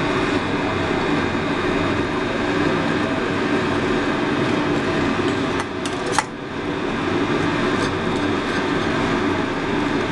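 Steady mechanical hum runs throughout. About six seconds in come a few sharp clicks of a table knife against a ceramic plate as it cuts through a toasted sandwich.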